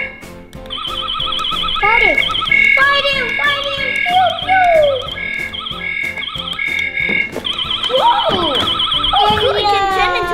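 Electronic sound effects from a Buzz Lightyear Star Command Center toy's control panel: a warbling alarm tone, then a beep pattern repeating about every 0.7 seconds, then the warbling tone again, with swooping effect sounds.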